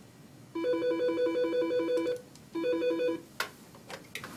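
Electronic office desk telephone ringing with a warbling trill that alternates rapidly between two pitches. It gives one full ring, then a second ring that is cut short. A few clicks follow as the handset is picked up.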